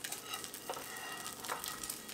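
Oil sizzling steadily around a frying egg in a hot steel pan, with a couple of light scrapes as a slotted metal spatula slides under the egg.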